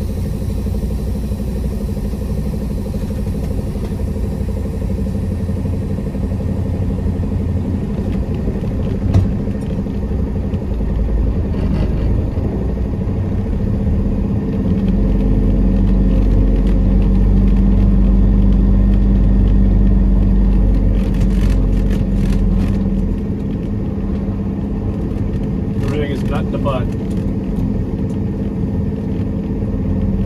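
Peterbilt 389's diesel engine running as the truck rolls slowly, heard from inside the cab, swelling louder for several seconds in the middle as it pulls. A few short clicks and rattles in the second half.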